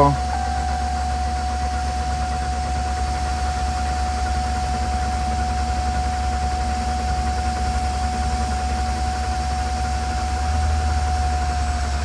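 Ram pickup's diesel engine being cranked by its starter on a weak battery in deep cold, turning over steadily with a constant whine but not catching. It gets a little louder near the end.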